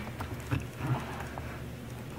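Faint ticks and soft bumps from fingers handling a small die-cast and plastic scale model, over a steady low hum.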